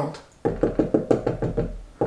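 Dry-erase marker tapping on a glass whiteboard in quick short strokes, about seven a second, starting about half a second in.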